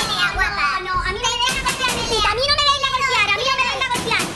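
Several women shouting over one another in a heated argument: high-pitched, overlapping voices with no pause.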